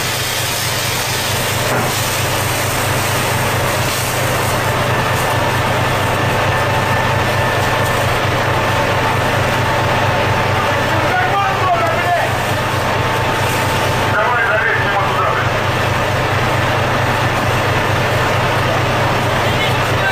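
Steady low drone of the fishing boat's machinery under a constant hiss of water spraying from a deck hose.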